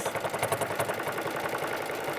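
Sewing machine with a free-motion quilting foot running at a steady fast speed, its needle stitching in a rapid, even rhythm during free-motion stipple quilting.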